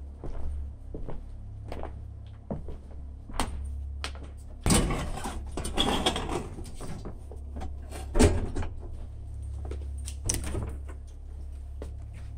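Handling noise in a deserted building: scattered knocks and clunks, a rustling scrape lasting about two seconds around five seconds in, a sharp thump a little after eight seconds, and another knock around ten seconds as a hand goes to a door, over a steady low hum.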